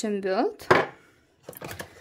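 A sharp knock of a small gel polish bottle set down hard on a tabletop, followed by a few lighter clicks as the bottles are handled.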